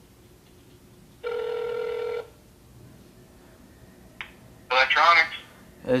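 One ring of a telephone ringing tone over a phone's speakerphone, about a second long, while the call is being transferred. A click follows about four seconds in.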